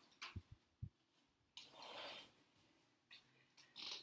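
Near silence with faint handling noises: a few soft low thumps under a second in, then a brief rustle about two seconds in, as a large foam board is set aside.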